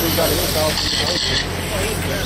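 People talking over the high whine of radio-controlled race cars, with a steady low hum underneath.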